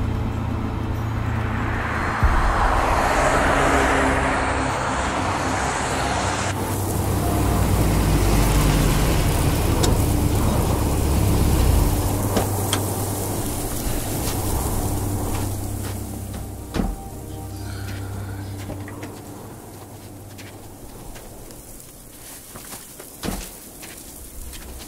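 Jeep Grand Cherokee driving on a snowy road: a steady low engine and road rumble, with a rushing hiss in the first few seconds that cuts off suddenly. The rumble drops away about two-thirds of the way through, and a few sharp knocks follow near the end.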